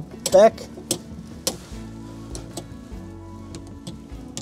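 Manual flap handle of a Pilatus PC-6 Porter clicking through its notches as the slotted flaps are worked back up from landing toward takeoff position: several short, sharp clicks at uneven intervals, over soft background music.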